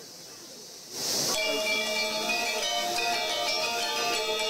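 Balinese gamelan music starting about a second in with a short bright crash, then bronze metallophones ringing together in many steady, sustained pitches.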